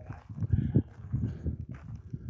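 Footsteps of a person walking on a dirt path, irregular low thuds about two or three a second.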